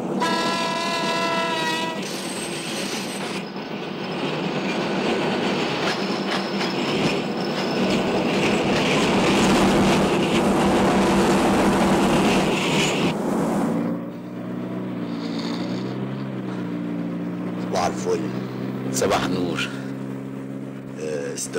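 A train horn sounds for about two seconds, then a train runs with a dense, steady rumble and rattle. At about 14 s this gives way to a vehicle engine running steadily.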